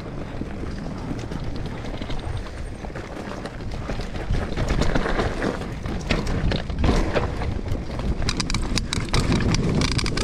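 Mountain bike rolling fast down a dirt forest trail: tyre noise over dirt and roots with a rumble of wind on the microphone, and short rattles and clicks from the bike that come thicker in the second half.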